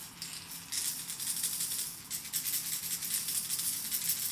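Steel balls rattling in the noise chambers of two hard plastic trolling wobblers, a German Tron and the Salmo Freediver it copies, shaken by hand: a quick, dry, high-pitched rattle that starts about a second in, with a short break around two seconds. The two chambers may sound slightly different.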